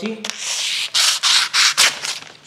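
A sheet of paper ripping as a blunt kitchen knife is dragged through it. It is a rough tearing rasp in several strokes, the dull blade tearing the paper rather than slicing it.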